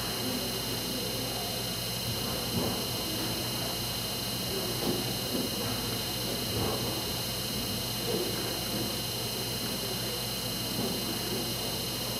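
Indistinct chatter of people talking at a distance, under a steady hiss and low electrical hum, with a few faint knocks.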